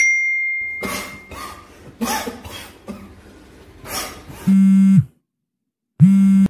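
A chime-like ding at the start, then a man coughing several times, followed near the end by a short, loud electronic buzz whose pitch drops as it cuts off.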